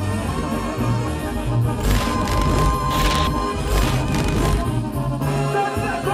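A live Mexican brass band (banda) playing, with bass notes stepping along under sustained chords, and a run of loud crashes about two to four seconds in.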